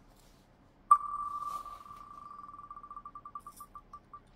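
Wheel of Names on-screen spinner playing its tick sound from a laptop: a click about a second in, then rapid ticks at one pitch that run together at first and slow steadily to a few a second as the wheel winds down.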